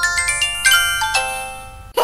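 A short jingle of bell-like chimes: a quick run of ringing notes, each stepping lower and held so they overlap, dying away near the end.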